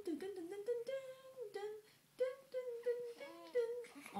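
A person humming a simple tune in a high voice, holding short notes that step up and down, with brief breaks between phrases.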